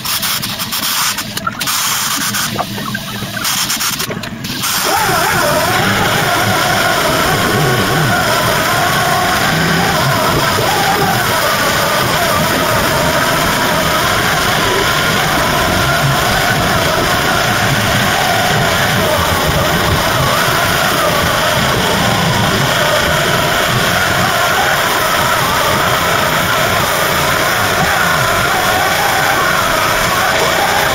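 Music playing over the steady whir of a random orbital sander flatting down a car's steel body panel. A few short knocks come first; the loud steady sound starts about five seconds in.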